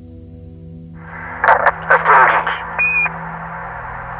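Radio-transmission sound effect: static narrowed like a radio or telephone line comes in about a second in, with loud crackles and then a short high beep near three seconds, over a low held music drone.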